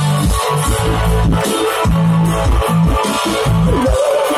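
Live band playing through a concert sound system, heard from within the crowd: a heavy sustained bass line under a steady driving beat, with guitar and electronic sounds and no singing.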